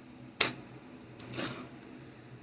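A single sharp knock about half a second in as the spring-clamped glue-up is set down on a piece of wooden flooring, followed by a softer rustle and shuffle a second later.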